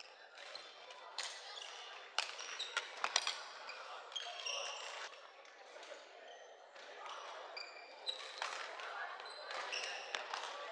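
Badminton doubles rally: sharp racket-on-shuttlecock strikes, closely spaced around two to three seconds in and again near the end, with short squeaks of shoes on the wooden court. Voices chatter in the hall behind.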